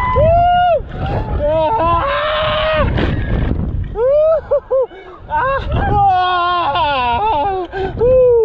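Riders' wordless whoops and screams on the Booster thrill ride: long cries that swoop up and down in pitch, sometimes more than one voice at once, over a steady rush of wind on the microphone from the ride's swing.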